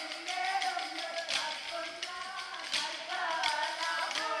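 Kolkali performance: wooden sticks clacking sharply against each other while a vocal song runs underneath.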